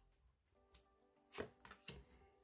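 Tarot cards handled and one laid down on a tabletop: a few faint, short taps and slides, the clearest about halfway in and near the end, over quiet background music.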